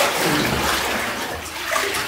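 Bathwater sloshing and splashing as a man's body is plunged backward under the water of a full bathtub for immersion baptism. The splash is loudest in the first second and then eases, with a smaller surge near the end.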